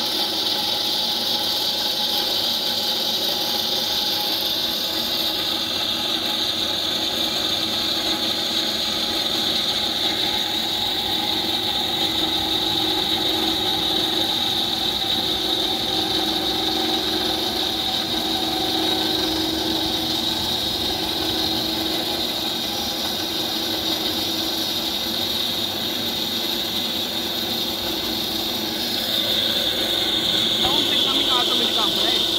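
Horizontal metal-cutting band saw running with its blade cutting through a black steel pipe: a steady mechanical drone with a high-pitched whine that holds evenly throughout.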